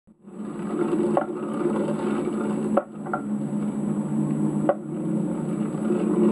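Skateboard wheels rolling steadily over pavement, a low rumble with three sharp clicks a second or two apart as the wheels cross joints in the paving.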